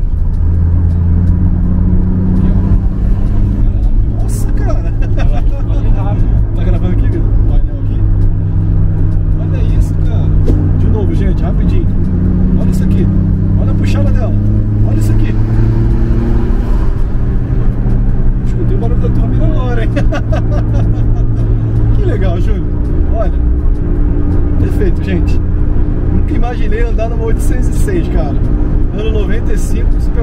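Cabin sound of a Peugeot 806 minivan at highway speed: its 2.0 8-valve turbo four-cylinder engine running under load, its note rising and falling with the revs, over road noise.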